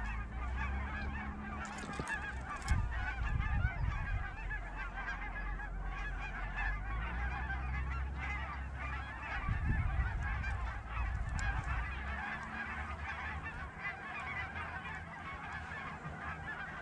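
A large flock of geese calling without a break, a dense chatter of many overlapping honks, with a low rumble underneath.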